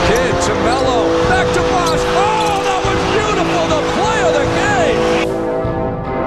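Basketball game sound: sneakers squeaking on a hardwood court in short rising-and-falling chirps over crowd noise, laid over a music track. The game sound cuts off suddenly about five seconds in, leaving the music.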